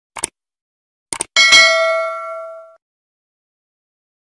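A few short clicks, then a single metallic ding that rings and fades out over about a second.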